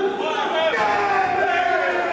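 A ring announcer's amplified voice over a public-address system in a hall, calling out in a drawn-out delivery with long held vowels.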